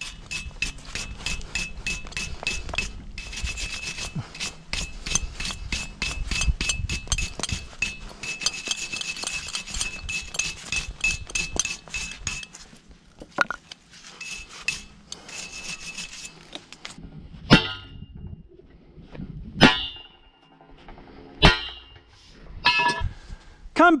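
Wire brush scrubbing the threads of a galvanised steel pipe, rapid back-and-forth strokes for the first half, done to clean the threads of a pump-column (drop pipe) joint. Then several separate sharp metallic knocks, about two seconds apart.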